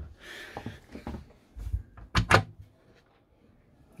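Wardrobe door under the bed of a motorhome being opened: soft rustling and handling noise, a low bump, then two sharp clicks a little after two seconds in.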